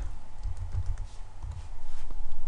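A few keystrokes on a computer keyboard as a client name is typed, over a low rumble.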